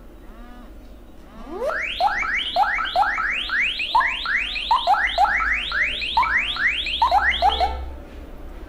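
An anti-theft charger alarm app sounding through a Vivo phone's speaker after the charger is pulled out: one slow rising sweep about a second and a half in, then a siren-like run of fast rising electronic sweeps, about three a second. It cuts off just before the end as the alarm is stopped by password.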